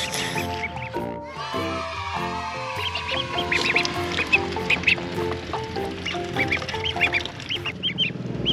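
Young ducks peeping in short, high, repeated calls over background music with a melody of held notes.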